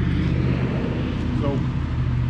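A steady low mechanical hum from a running motor, with a brief faint wavering whine about one and a half seconds in.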